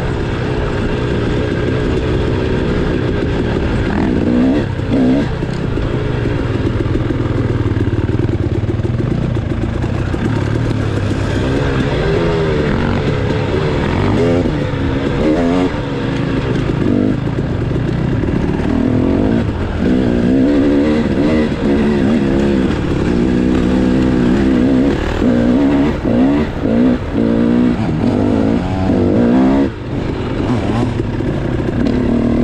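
Dirt bike engine heard from on board, its pitch rising and falling over and over as the throttle is opened and closed, with brief drops in level a few seconds in and near the end.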